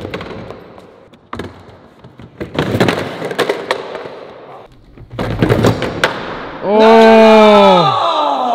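Skateboard and bongo balance board knocking and rattling on a ramp and a concrete floor as the rider loses them, with several separate knocks. Near the end comes a man's long, loud yell whose pitch falls away, the loudest sound here.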